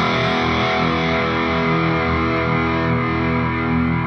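Distorted electric guitar ringing on a single low E power chord (open low E string, with the A and D strings at the second fret), struck just before and left to sustain steadily, then damped right at the end.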